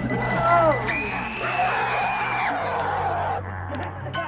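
A person screaming: a short falling cry, then a high-pitched scream held for about a second and a half, over background music with a low drone.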